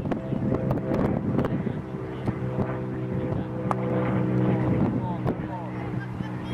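A steady engine drone holding one even pitch, with a few sharp knocks and voices over it.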